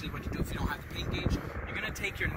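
A man talking, over a low rumble of wind on the microphone.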